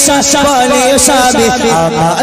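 A man's voice, amplified through a microphone, in a melodic half-sung recitation of a devotional naat, its pitch wavering over steady held accompanying notes.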